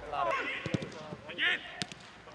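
Footballers shouting to each other during a training drill, with two sharp thuds of a football being struck, one about three-quarters of a second in and a crisper one near the end.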